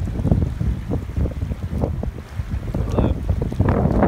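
Wind buffeting the microphone in uneven gusts, a heavy low rumble, with small waves washing onto the shore.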